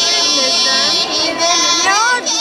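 Women's folk choir singing a Pomak polyphonic song without instruments. One voice holds a steady note while the other voices move around it.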